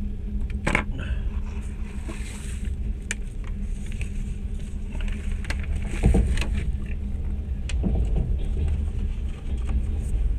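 Steady low rumble with a constant hum inside a standing passenger train carriage. Scattered knocks and clicks break in, the loudest about six seconds in.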